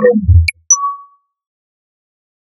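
Edited logo sound effects: a falling run of pitched tones over low thuds, ending in a single short, clear ding about two-thirds of a second in that rings out within half a second.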